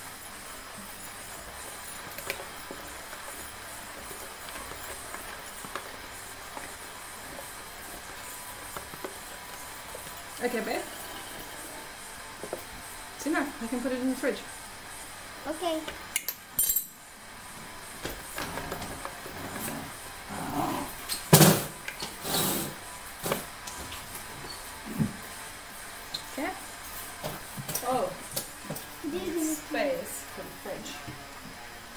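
Background music under quiet room tone, with scattered brief voices and a few sharp clinks and knocks of a metal spoon against a glass bowl and the counter, the loudest knock about two-thirds of the way through.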